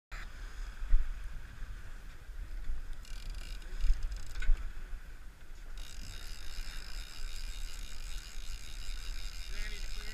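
A boat running through chop: wind buffets the microphone in gusts and water rushes along the hull, over the steady whine of twin outboard motors.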